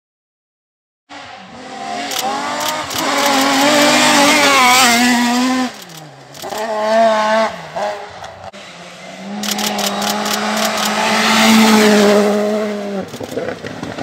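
Rally car engine revving hard on a gravel stage, starting about a second in, its pitch rising and jumping with gear changes and lifts, with sharp crackles over it. It drops away briefly around the middle, then holds a long steady pull that cuts off sharply near the end as the driver lifts.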